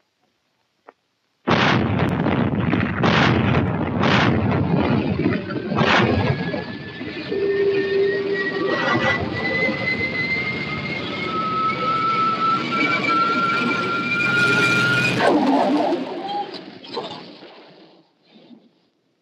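Heavy naval gunfire from the 8-inch/55 guns: four loud shots in the first few seconds over a continuous roar. A thin whine rises slowly in pitch through the middle, and a last loud blast comes near the end before the sound fades away.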